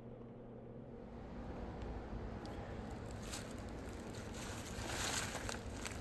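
Faint outdoor ambience with light rustling of dry fallen leaves.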